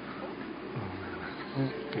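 Pause in a radio broadcast: steady hiss with a low hum from an off-air FM recording, and a faint low murmur about a second in.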